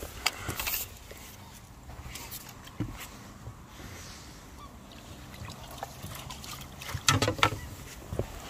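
Quiet lakeside sound with faint water splashing and net handling as a tench is drawn into a landing net, and a short, louder call-like sound about seven seconds in.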